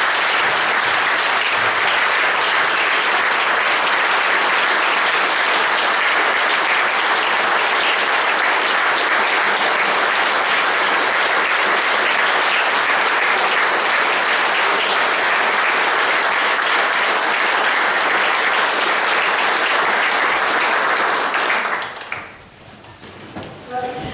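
A roomful of people applauding, loud and unbroken for about twenty seconds, then dying away quickly near the end.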